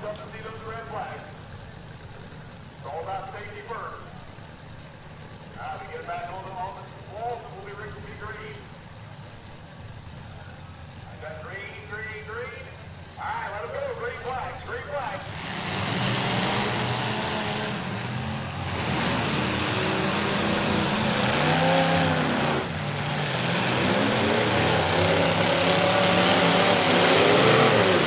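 Demolition derby cars' engines idling low and steady while the cars are stopped, with faint voices over them. About halfway in, on the restart, many engines rev up hard and keep running loud, rising and falling, to the end.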